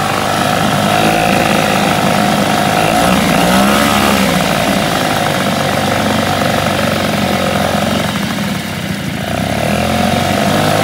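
Tohatsu 5 hp single-cylinder two-stroke outboard running in gear with its propeller churning a bin of water, on its initial run-in after head work that raised compression to just over 140 psi. The revs rise and fall back about three to four seconds in, and dip briefly near the end before picking up again.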